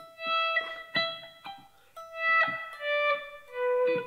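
Electric guitar playing a slow single-note lead phrase of about seven notes. Several notes swell in with a volume pedal, fading up instead of starting with a pick attack.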